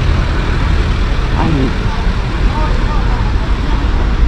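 Steady low rumble of city road traffic, with faint voices briefly heard in the background.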